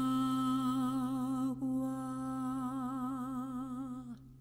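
A woman's voice holding a long wordless note with a slow vibrato, in the drawn-out style of a Venezuelan tonada de ordeño (milking song). The note breaks off briefly about one and a half seconds in, then a second held note fades out at the end.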